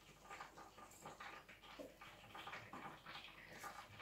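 Faint, irregular crackling of breaded meat patties frying in a deep fryer.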